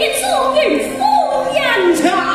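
Cantonese opera music: a pitched melodic line with repeated falling slides, about one every half second, over steady held notes.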